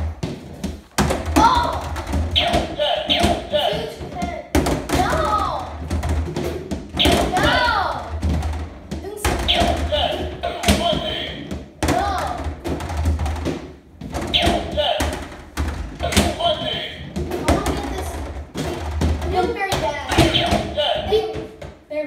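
Skee-ball balls rolling up a home skee-ball machine's wooden lane with a low rumble, then knocking and thudding into the scoring rings and ball return, over and over.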